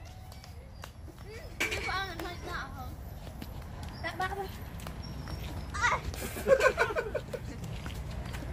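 Children's voices calling out in short bursts during an outdoor game, with light footsteps and scattered small taps over a steady low background rumble.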